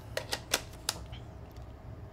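A few quick, sharp clicks from a DSLR camera with a hot-shoe flash being handled, the mechanical clicks of camera parts being moved or seated. Four clicks come in the first second, then only faint room tone.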